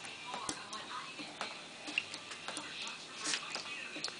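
Water from leaking pipes dripping into an empty plastic storage tub: irregular sharp ticks, two or three a second.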